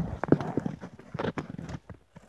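Handling noise from a handheld camera or phone being moved about: irregular knocks and rubbing, loudest at the start and thinning out toward the end.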